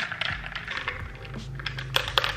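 Ice cubes clinking against a tall drinking glass as a straw stirs an iced latte: a quick, irregular run of light clicks.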